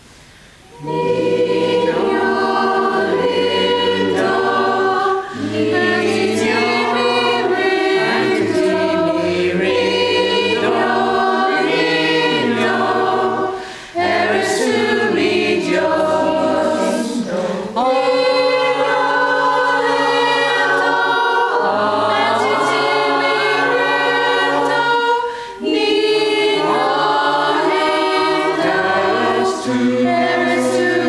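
Mixed choir singing a carol in several parts, coming in about a second in and going on in phrases with brief breaks between them.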